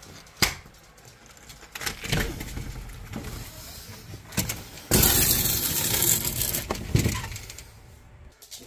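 A door being unlatched and opened by hand, with a sharp latch click about half a second in, then handling knocks and rustle. About five seconds in a loud hissing noise runs for about two seconds, ending with a knock.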